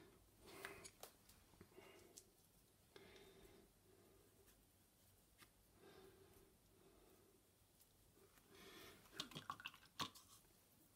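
Near silence with faint, soft dabbing and scraping of a paintbrush picking up acrylic paint from a plastic palette and painting it onto a wooden tag. A few small clicks come about nine seconds in.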